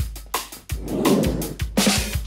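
Cartoon background music with a quick drum-kit beat over a steady bass.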